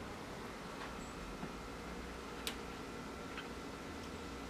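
Glass beer bottle turned in gloved hands over a flame: a few faint, scattered clicks, the sharpest about two and a half seconds in, over quiet steady background noise.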